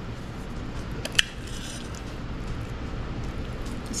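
Knife and fork cutting through a stuffed bell pepper on a ceramic plate: faint soft cutting sounds, with one sharp click of metal cutlery against the plate about a second in.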